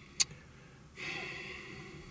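A faint click, then about a second of soft, hissy breathing out from a person.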